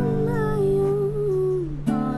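A girl's voice singing one long held note, its pitch wavering and then sliding down near the end, over a ringing acoustic guitar chord that is strummed again just before the end.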